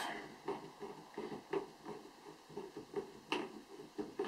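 Emptied air cylinder of a BSA Scorpion SE air rifle being unscrewed by hand from the action: faint handling and thread sounds with a couple of light clicks.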